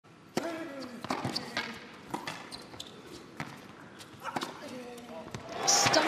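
Tennis ball struck by rackets and bouncing on an indoor hard court, a sharp hit with a short echo every half-second to a second through a rally. Crowd applause breaks out near the end as the point is won.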